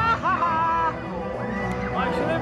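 A high, bending vocal call in the first second, over loud background music.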